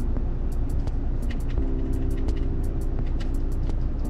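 A phone call's ringing tone from the car's speakers via the Bluetooth head unit while the call is dialing, one steady tone from about one and a half seconds in until just before the end. A steady low cabin hum runs underneath.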